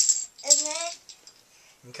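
Plastic Connect Four discs clacking against each other as they are handled in a pile: one sharp clack at the start, then a few faint clicks.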